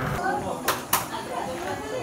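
Faint voices of people talking in an indoor hall, with two sharp clicks close together about a second in.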